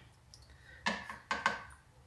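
Three light knocks of a small fish net's frame against the rim of a clear plastic jar as the net is worked out of the jar's mouth, the last two close together.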